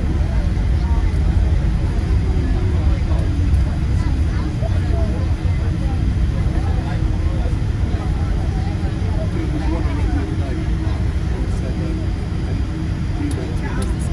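Steady low rumble in the cabin of a Boeing 787-8 Dreamliner taxiing with its GEnx-1B engines at idle. Passengers talk indistinctly over it.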